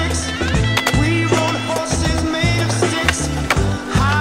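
Skateboard rolling on concrete with a few sharp clacks of the board, mixed over a rock song with bass and guitar.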